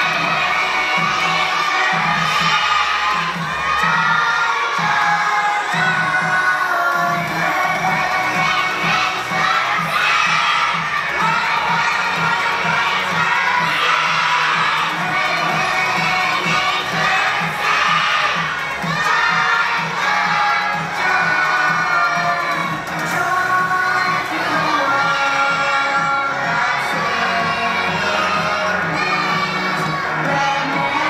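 A large group of young children singing loudly together over music with a steady beat.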